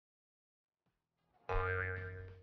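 Silence, then about one and a half seconds in a short transition sound effect starts suddenly: a steady electronic tone with a brief rising glide, fading away. It marks the change to the next picture.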